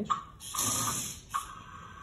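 A gesture-controlled toy stunt car's small electric drive motors whirring as it drives forward across a wooden table, lasting about a second.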